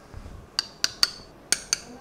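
A metal surgical mallet tapping a knee-prosthesis component onto the bone. Five sharp metallic taps: three quick ones, then two more.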